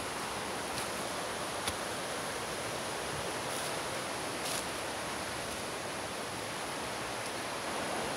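Steady, even rushing background noise with a few faint clicks, and no voice.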